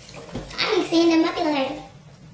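A woman's wordless vocal sound, a closed-mouth hum that rises and falls in pitch, starting about half a second in and lasting about a second and a half.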